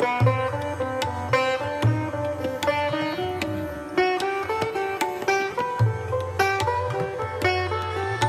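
Sitar playing a melodic line of separate plucked notes, some sliding in pitch, with tabla accompaniment whose deep bass strokes ring out several times.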